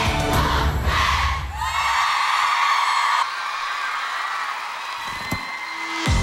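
The last bars of a K-pop dance track with heavy bass, cutting off about two seconds in. A studio audience cheers over the ending, then the cheering dies down to a softer crowd noise.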